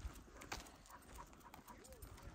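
Near silence: faint outdoor background with a couple of light clicks.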